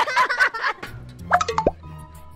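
Girls laughing and shrieking, then a quick splash with a falling plop about a second and a half in as water lands on a person below, over background music.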